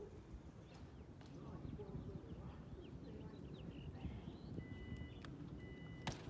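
Faint outdoor background: a low steady rumble with faint distant voices, and two short high beeps near the end.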